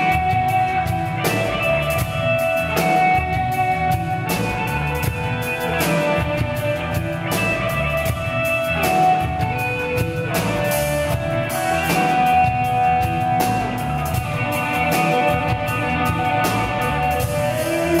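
Live rock band: an electric lead guitar plays a melody of long held, sustained notes over drums.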